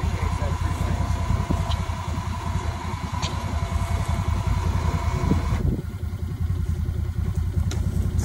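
Side-by-side UTV engine running steadily at low revs, a continuous low pulsing, as the buggy pulls a rope over a branch to hoist a heavy wild boar.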